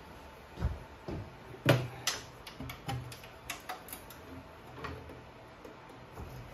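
Hand tools clicking and knocking against a small engine's metal shroud and bolts as they are worked loose: a string of irregular light metallic knocks.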